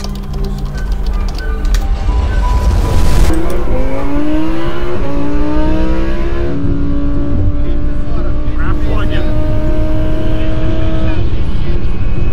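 A car engine accelerating hard, its pitch rising for a few seconds and then holding steady at high revs, over a deep rumble.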